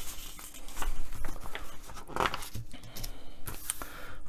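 Pages of a paper magazine being turned and smoothed flat by hand: a papery rustling and crackling that comes in several short bursts.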